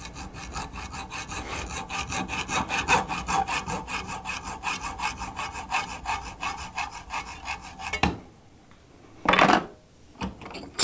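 Hacksaw cutting through the aluminum tube of an air-conditioning hose fitting held in a bench vise, in quick, even strokes that stop about eight seconds in. A brief, louder burst of noise follows about a second later.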